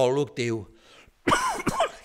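A man's voice: a few spoken words, then a short cough about a second and a half in.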